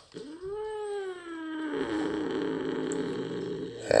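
Domestic cat giving one long, low yowl that rises and then falls, turning rough and rattling like a growl for its last two seconds. It is the grumbling of a cat that is in pain and feeling unwell.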